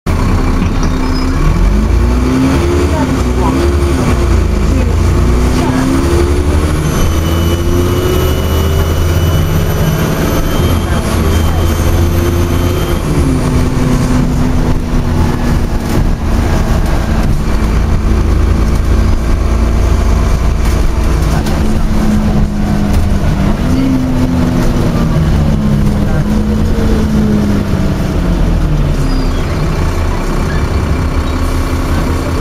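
Dennis Trident 2 double-decker bus with Alexander ALX400 body, heard from a passenger seat inside: the engine and driveline running under way, with a deep hum throughout. The pitch climbs in steps over the first few seconds and later dips and rises again as the bus slows and accelerates. A faint high whine swells and fades between about six and thirteen seconds in.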